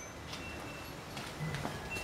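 Quiet room tone with a few faint, short ticks and knocks.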